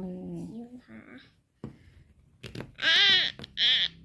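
A young child's voice giving two short, high-pitched squeals about three seconds in.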